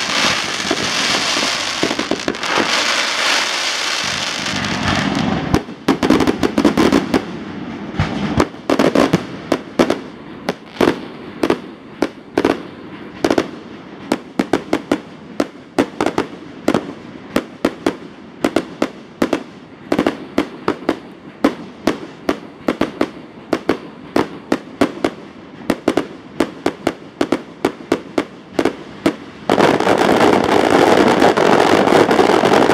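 Aerial fireworks: a dense crackling hiss for the first few seconds, then a long run of sharp bursting bangs, about two to three a second, until the end.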